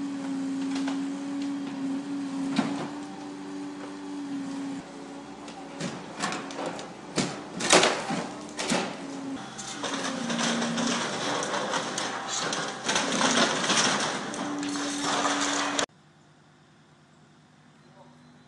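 Demolition excavator running with a steady droning hum while its grab tears into a building's roof: sharp cracks and crashes of splintering timber and falling debris, the loudest about halfway through, then a dense spell of breaking and rattling. The sound cuts off suddenly shortly before the end, leaving only a faint background.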